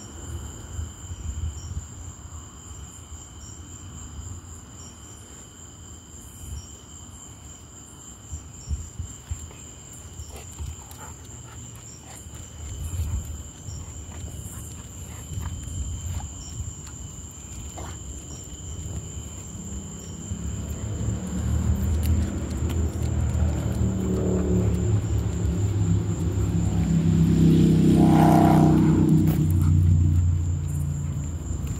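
Crickets trilling steadily in two high, unbroken tones, with scattered light clicks and rustles. Over the last ten seconds a low rumble swells, loudest a couple of seconds before the end.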